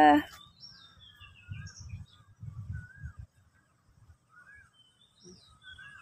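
Small birds chirping and calling with short rising and falling notes, scattered throughout, against a few faint low rumbles in the first half.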